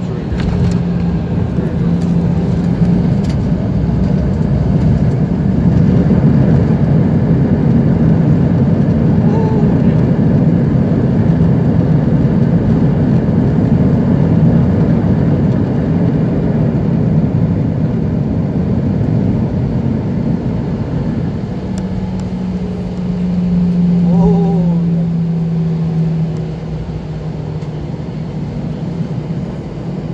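Cabin noise of an Airbus A319 on its landing rollout: a loud, steady roar of the jet engines and air rushing over the wing with its spoilers raised, under a low hum. It eases off in the last few seconds as the jet slows.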